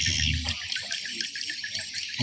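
Calling animals in a steady, rapid pulsing chirr of about ten pulses a second.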